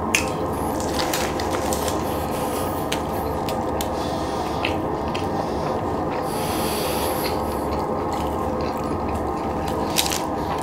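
Close-miked eating sounds of a person chewing a mouthful of loaded fries, with wet mouth clicks and smacks scattered over a steady rough noise.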